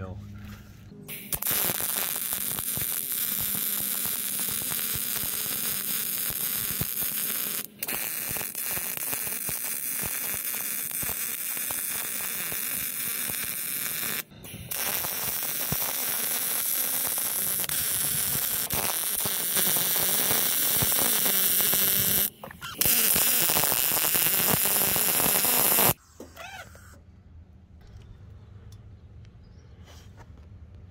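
Miller 252 MIG welder arc on a steel truck frame rail, running .030 wire with 75/25 shielding gas and welding vertical-up with the wire speed turned down: a steady loud crackling hiss in four runs, with brief stops about 8, 14 and 22 seconds in, ending about 26 seconds in.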